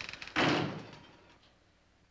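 A single heavy slam about half a second in, dying away over about a second.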